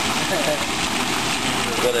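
Quicklime slaking in a metal drum of water: a steady hissing and bubbling noise as the calcium oxide reacts with the water, boils and gives off steam.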